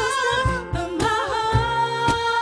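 Woman singing a held note that turns into a short wavering run about a second in, with acoustic guitar and backing vocals behind her.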